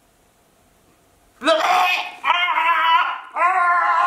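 A woman's high-pitched, wordless "mmm" sounds of delight, made with her mouth full while chewing. There are three drawn-out sounds, beginning about a second and a half in after a quiet start.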